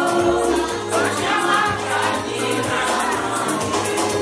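A group of women singing together in chorus over music with a steady beat.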